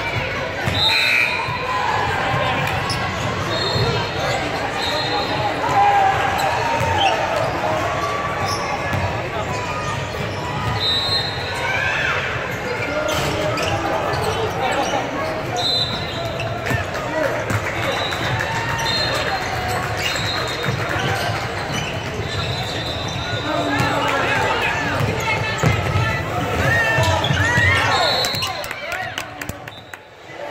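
Basketball being bounced and played on a hardwood gym floor, with indistinct players' and spectators' voices echoing through a large hall. Several brief high-pitched squeaks come and go throughout.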